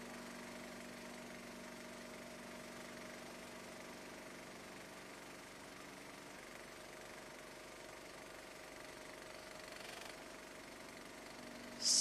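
A faint, steady hum with hiss.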